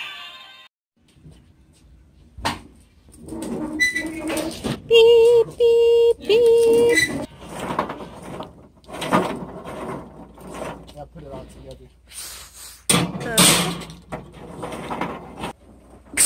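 Snatches of voices, broken by three short, loud held notes about five to seven seconds in.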